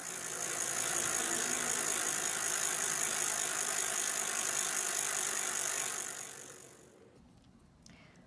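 Bicycle sound effect laid under an on-screen cartoon bike: a bike riding by as a steady rattling whir that fades in, holds for about six seconds and fades away.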